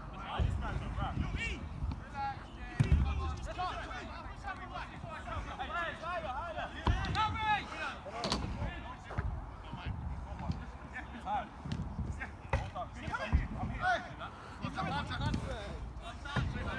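Football players' distant shouts and calls across the pitch, with a few sharp thuds of the ball being kicked scattered through.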